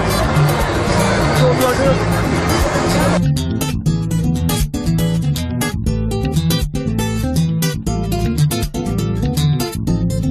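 Background music with plucked acoustic guitar over a steady, repeating bass line. For about the first three seconds it is mixed with the noise of a crowd and voices; after that the music plays alone.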